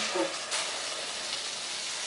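Boiled water pouring steadily from an electric kettle into a soup pot of diced potatoes and stewed mushrooms.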